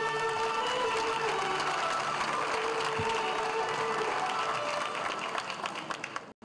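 Audience applauding in a hall over music with long held notes.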